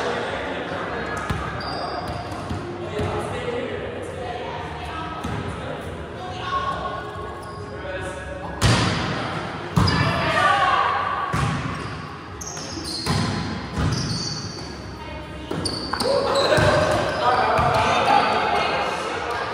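Volleyball being struck during a rally: a string of sharp slaps of hands and forearms on the ball, a second or two apart, starting about halfway through and ringing in a large gym, under the players' calls and chatter.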